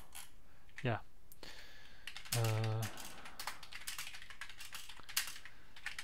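Typing on a computer keyboard: an irregular run of quick key clicks, coming thick and fast through the second half.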